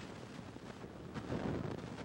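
Wooden spoon stirring thick batter in a mixing bowl, a soft, irregular scraping over steady room noise.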